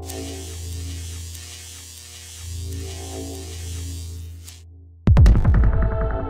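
Electronic intro music: a low, pulsing synth drone under a steady high hiss with faint crackles. About five seconds in, a loud sudden impact hit lands and opens into a sustained synth chord.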